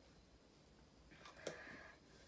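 Near silence, then a faint click about one and a half seconds in with a short rustle around it: the plastic cap being set back on a plastic drink bottle's neck.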